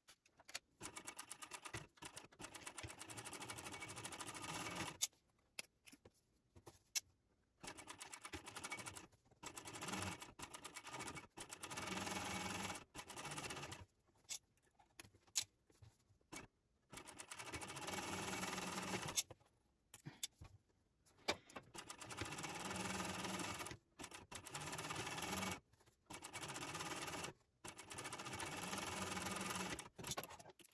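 Techsew 2750 Pro industrial cylinder-arm sewing machine topstitching a strap, running in bursts of one to five seconds with short stops between them.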